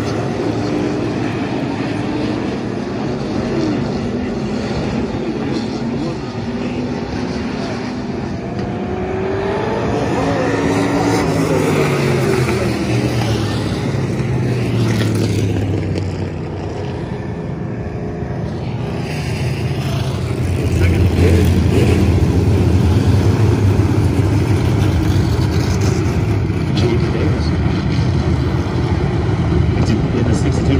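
A field of IMCA Stock Car V8 engines circling a dirt oval at reduced pace before a restart, the engine pitch rising and falling as cars pass. From about 21 seconds in, the pack comes past closer and the engine sound gets louder.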